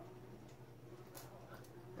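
Small pump spray bottle being pumped to prime it, a few faint clicks and short hisses of spray over a steady low hum.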